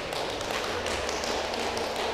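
Scattered light taps and footfalls on a sports-hall floor, with a faint murmur of voices in the background.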